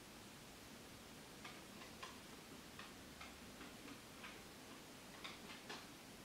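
Near-silent room tone with about a dozen faint, irregular ticks, starting about one and a half seconds in and ending near the end.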